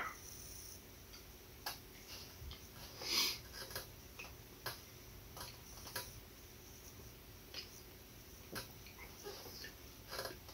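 Quiet tasting sounds: scattered faint clicks from a plastic spoon and lips, with a short breathy sniff about three seconds in.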